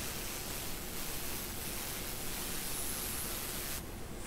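Circular saw crosscutting the end of an oak bar top, mixed low and heard as a steady hiss of cutting noise without a clear motor whine. The sound changes abruptly just before the end.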